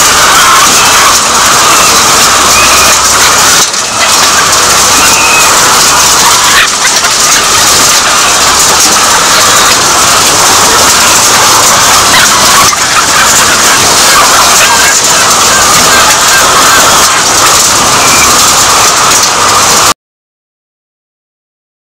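Loud, continuous din of a large flock of caged laying hens clucking and calling together in a battery-cage hen house.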